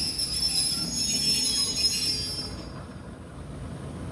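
Passenger train's steel wheels squealing on curved track, several high shrill tones over a low rumble. The squeal fades away about two and a half seconds in, leaving a quieter rumble.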